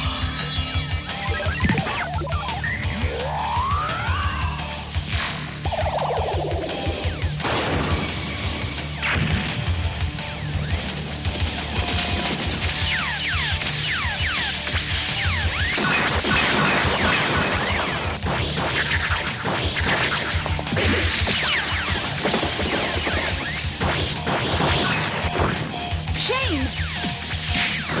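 Action background music with cartoon fight sound effects: many crashes and hits throughout, and a few swooping sci-fi glides in the first few seconds.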